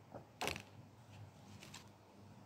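Stiff paper flashcards being handled: a short sharp snap about half a second in, a lighter click just before it, and a few faint ticks near the end.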